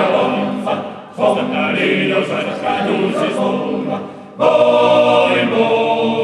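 Sardinian men's choir singing a cappella in close harmony. Phrases end and the voices come back in twice, about a second in and again about four seconds in.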